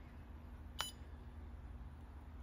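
Pentair Fleck 5800 XTR2 water softener control valve's touchscreen giving one brief beep as its save icon is pressed, over a faint steady low hum.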